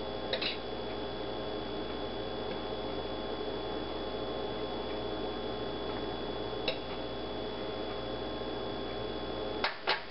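A steady electrical hum, with a few faint clicks and taps as loose hash brown pieces are picked up off a paper towel, about half a second in, near the seventh second and twice just before the end.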